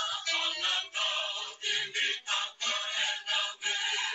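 A recorded song with singing playing.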